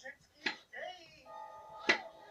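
Chrome plate-loaded dumbbells clanking metal on metal, twice about a second and a half apart, as they are pressed up in quick reps.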